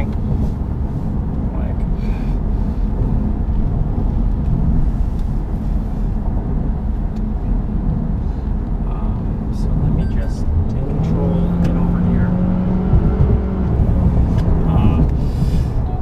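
Toyota car's cabin at highway speed: steady road and tyre rumble, with an engine note that rises about eleven seconds in, holds for a few seconds and fades.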